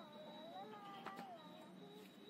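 A soft, high voice drawing out long notes that slide up and down in pitch, with a drop near the middle and a brief rise about a second in.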